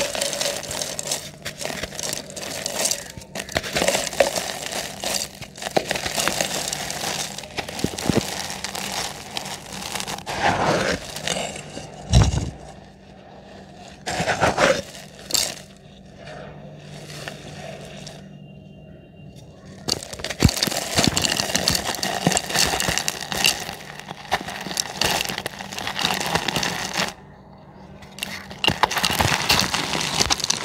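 Dry, reused cement chunks crumbling in the hands, with gritty crackling crunches as grit and dust fall into a cement pot. There is a thump about twelve seconds in, then a quieter stretch until about twenty seconds in, when the crumbling picks up again.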